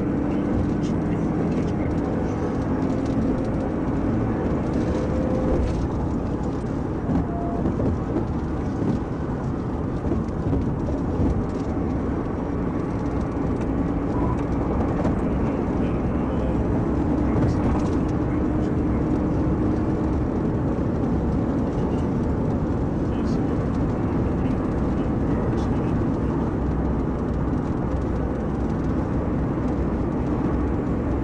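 Steady road, tyre and engine noise heard inside a police patrol car driving at over 100 mph.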